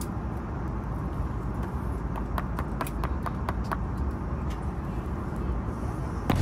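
Steady low rumble of an airliner cabin, with a quick run of light clicks about two to three and a half seconds in.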